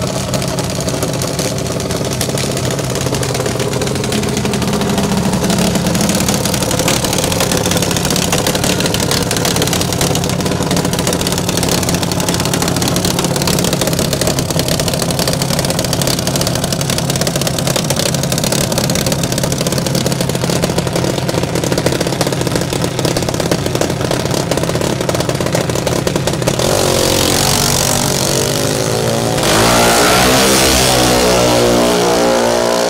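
A small dragster's engine idling steadily, then revving higher near the end. In the last moments it runs hard and climbs in pitch as the car launches off the starting line.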